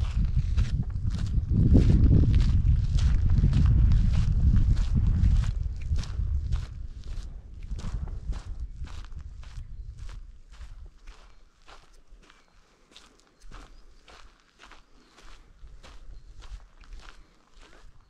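Footsteps of one person walking at a steady pace on dry, rocky mountain ground, about two steps a second. A loud low rumble runs under the first few seconds and fades away by the middle.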